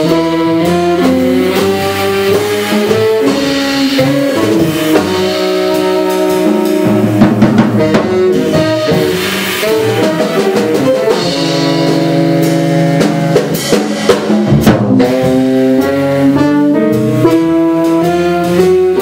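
Jazz quintet playing live: saxophone and an electronic wind instrument sound sustained, shifting notes together over drum kit, upright bass and piano.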